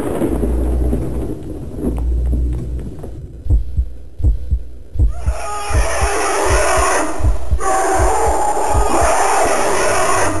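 A heartbeat sound effect: low double thumps repeating about once a second, coming in about three seconds in after a low rumble. From about halfway through, a loud steady rushing hiss plays over it.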